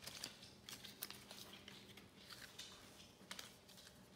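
Near silence with faint, scattered ticks and rustles of folded paper slips being handled in a cap as one is drawn out and unfolded.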